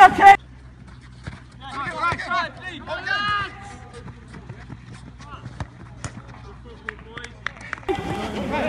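Outdoor football pitch: a close shout breaks off just after the start, then players shout in the distance, followed by scattered faint knocks from the ball and boots on the artificial turf over a low steady background.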